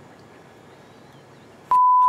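A TV censor bleep: one steady, loud beep of about a third of a second near the end, blanking out a spoken word. Before it there is only faint background hiss.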